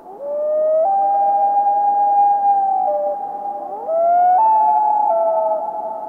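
Recorded common loon wails: long, drawn-out notes that step up and down in pitch, two voices overlapping, fading away near the end.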